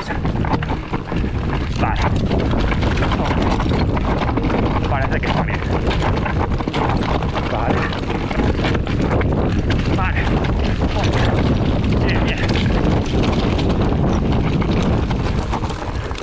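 Orbea Rise mountain bike descending loose rocky trail: tyres crunching over stones and the bike rattling with many small clicks, under steady wind noise on the microphone.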